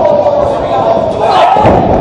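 A heavy thud of a wrestler's body hitting the ring mat about one and a half seconds in, over shouting voices.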